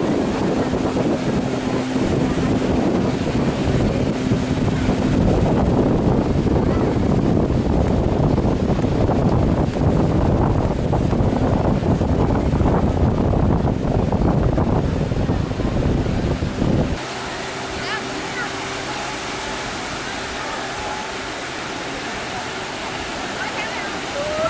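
Wind buffeting the microphone over surf, with a steady motorboat drone as a banana boat is towed across the sea. About seventeen seconds in, the sound cuts abruptly to quieter beach waves with a low steady hum.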